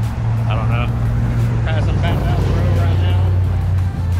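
A motor vehicle engine running with a steady low drone, joined briefly by snatches of people's voices about half a second and two seconds in.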